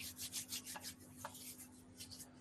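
Faint, breathy laughter: a run of quick puffs of air with no voice, coming fast at first and then thinning out.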